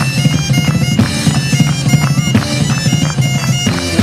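Live Celtic rock band playing an instrumental passage: a bagpipe melody with its steady drone over electric guitars and a rock drum kit.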